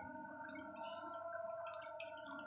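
Aquarium aeration: air bubbles gurgling and popping in the water over a steady electric hum from the tank's pump.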